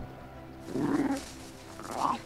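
Harp seal pup calling: two short calls, a longer one about a second in and a brief one near the end.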